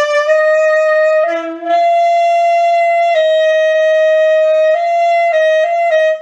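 C melody saxophone playing long held high notes that step up and down between a few neighbouring pitches. These are the unshimmed high palm-key notes (E, F, F sharp), which play sharp, the E-to-F step almost a whole tone instead of a semitone.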